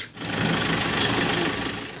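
A steady, rattling engine-like mechanical noise that fades toward the end.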